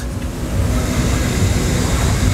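A steady low engine rumble with a hiss above it, without pauses or changes in pitch.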